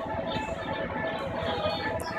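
Banjo music playing from an animated Halloween decoration of two banjo-strumming skeleton figures, a steady tune that runs through the whole moment.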